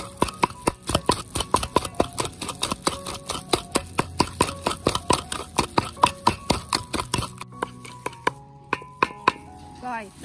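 A pestle pounding a wet paste of chilies, salt and seasoning with oyster sauce in a mortar, about three to four strikes a second. The pounding stops about seven seconds in, with a few slower strikes after.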